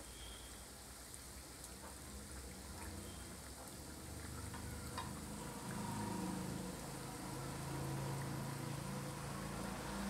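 Unniyappam (rice, jaggery and banana batter balls) deep-frying in hot coconut oil in a multi-cavity appam pan: a quiet, steady sizzle of bubbling oil, a little louder in the second half.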